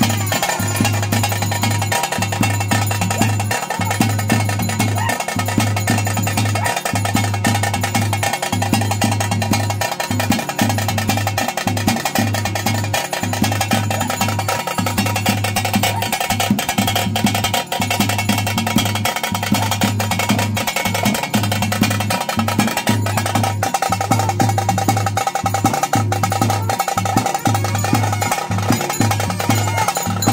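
Daiva kola ritual music: loud, continuous drumming with a sustained melodic line over it.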